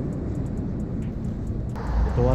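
Steady, muffled low rumble on a metro platform, typical of a train running through the station or tunnel. Near the end it gives way to a brighter, louder street background.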